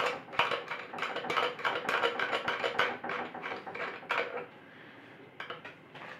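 Light clicks and rattles of a steel bolt and a plastic wedge piece knocking against the end of a steel tube as they are handled, in a quick uneven run for about four seconds. It then goes quieter, with a few more clicks near the end.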